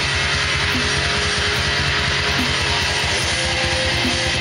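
Distorted electric guitar playing a fast, dense metal riff.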